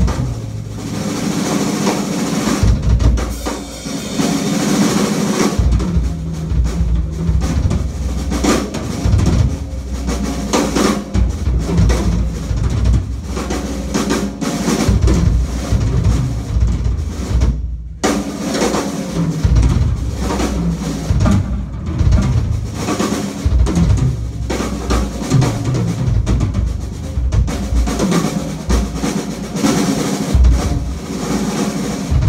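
Live drum kit solo on a Yamaha acoustic kit: dense, fast patterns across bass drum, snare, toms and cymbals, with rolls. The playing breaks off sharply for a moment a little past the middle, then carries on.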